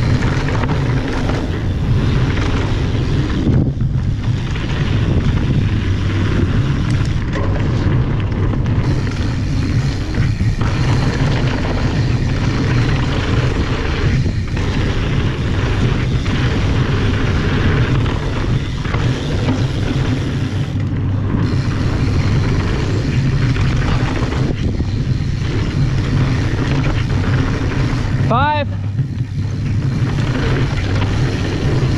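Wind rushing over the camera microphone and knobby tyres rolling over a dirt trail as a mountain bike descends at speed, steady throughout, with a brief squeal near the end.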